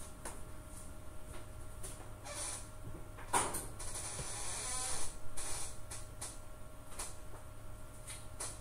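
Faint, regular ticking with a creaking, rustling noise in the middle, loudest about three seconds in.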